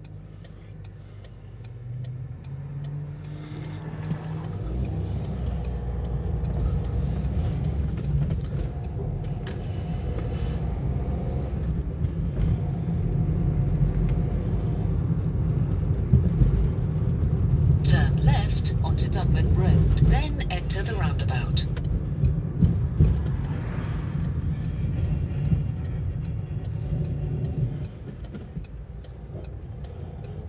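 Car engine and tyre rumble heard from inside the cabin while driving. It swells as the car pulls away and gets under way, and drops near the end as it slows. A few seconds of louder hiss come about two-thirds of the way through.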